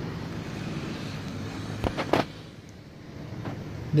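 Steady low hum of room and city background, broken by two sharp knocks about two seconds in, under half a second apart; it goes quieter after them.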